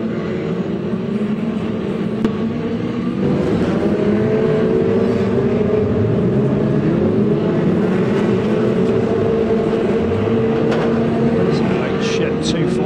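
A pack of F2 stock car engines racing, the pitch rising and falling as drivers rev and ease off through the turns. The sound gets louder about three seconds in as the cars come nearer.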